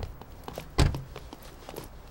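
A heavy thump at the start and a louder, deeper one just under a second in, with a few lighter footsteps between: a van's sliding door being pushed shut.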